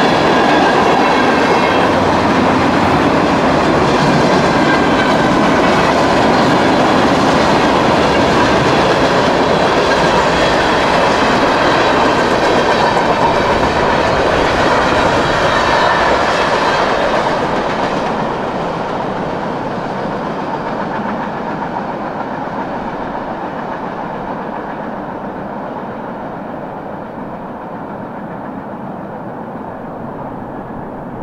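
Freight train of tank cars and covered hopper cars rolling past close by, a loud steady rumble of wheels on rail. From about 17 seconds in, the sound fades and dulls gradually as the train moves away.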